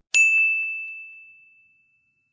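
A single bright notification-bell ding sound effect, struck once just after the start and ringing out as one high tone that fades over about a second and a half.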